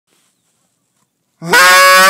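A hand-blown goose call sounding one loud, honk-like note near the end, starting low and breaking up to a higher pitch. It is a hunter calling to Canada geese.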